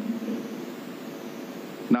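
A pause in a man's amplified speech, leaving a steady, faint hiss of large-hall room noise. His last word dies away at the start.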